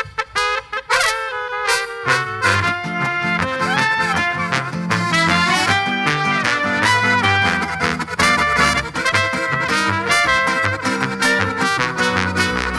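Live brass-and-folk band playing an instrumental passage, with clarinet and trumpet carrying the lead lines. For about the first two seconds only the high instruments play, then the bass and the rest of the band come back in.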